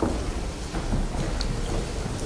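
A pause in speech filled by a steady low background rumble in the room, with a faint click about halfway through.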